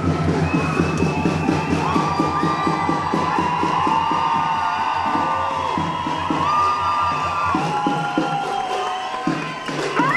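A marching crowd cheering and shouting over a fast, steady drumbeat, with long high-pitched cries ringing out above it. The drumming stops about eight seconds in while the crowd noise carries on.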